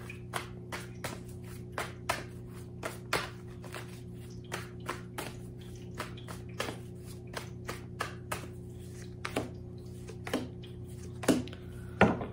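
A deck of tarot cards shuffled in the hands: a run of soft, irregular card clicks and taps, a couple a second.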